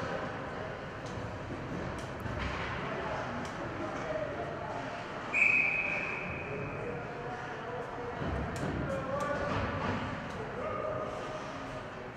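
Ice rink ambience during a stoppage in play: faint distant voices and calls from players, with scattered light taps and clicks of sticks and skates on the ice. About five seconds in, a single steady whistle blast from a referee lasts about a second and a half.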